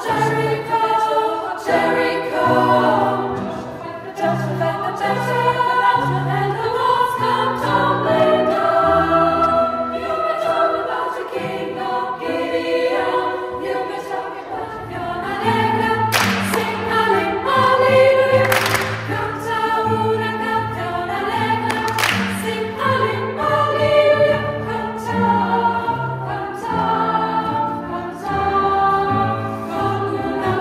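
Girls' choir singing a song with several voice parts at once. About halfway through, the singing is punctuated by a few sharp hand claps.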